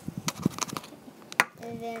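Plastic Ziploc bag crinkling in a string of sharp, irregular clicks as it is handled, with one louder click about a second and a half in.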